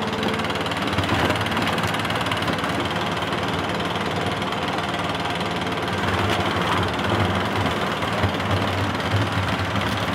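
Stihl backpack leaf blower's small engine running steadily, blowing air through its tube into a weather balloon taped to the nozzle.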